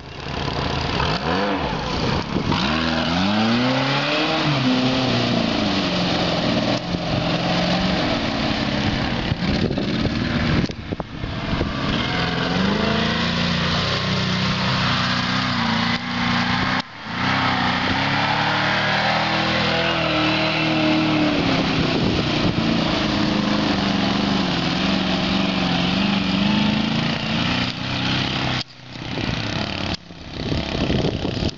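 Engine of a homemade all-wheel-drive low-pressure-tyre ATV revving up and down repeatedly as it is ridden through a wet field and mud puddles, with a few brief breaks in the sound.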